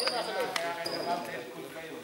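Indistinct chatter of people in a gym hall, with two short high squeaks, one at the very start and one about half a second in.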